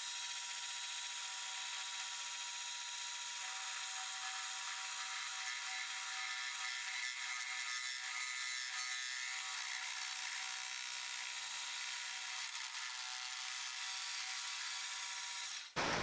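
Benchtop milling machine running steadily as a two-flute end mill bores an angled hole into a metal tube, a thin, even whine of spindle motor and cutting. It cuts off abruptly near the end.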